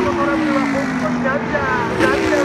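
Super GT race cars passing by one after another. Each engine note falls in pitch as the car goes past.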